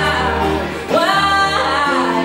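A man singing loudly over piano chords. About a second in, his voice swoops up into a high held note.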